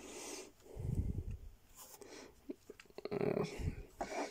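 Faint handling noise of a small plastic toy: soft rubbing and a few light plastic clicks as the rotor blades of a G1 Sandstorm figure are pulled up and spread, with some breathing.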